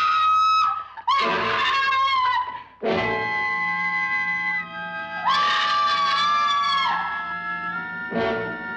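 A woman screaming three long, high-pitched screams: one at the start, one about a second in, and one a little past the middle. Between them, a dramatic horror film score holds sustained, shifting chords.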